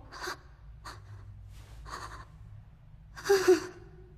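A person's breathing in several short, breathy puffs, then a louder voiced gasp a little over three seconds in.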